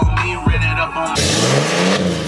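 Hip hop music with a heavy bass beat, cut off suddenly about a second in by a Ram diesel pickup revving hard through its large exhaust, rising in pitch as it blows black smoke.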